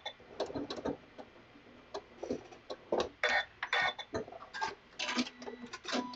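Janome MC9450 computerized sewing machine tying off a locking stitch: a few quiet, irregular clicks and taps.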